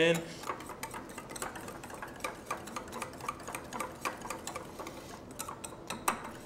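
Wire whisk beating brownie batter in a glass bowl, its wires clicking against the glass in a fast, steady rhythm.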